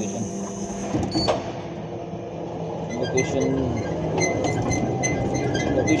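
Warehouse lift truck running and being steered, a steady motor hum with light clicks and rattles from about halfway on.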